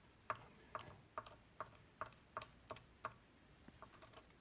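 Faint, evenly spaced light clicks, a little over two a second, like a ticking mechanism.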